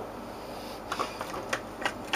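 A few light clicks and knocks of objects being handled on a workbench, about three of them from about a second in, over a steady low hum.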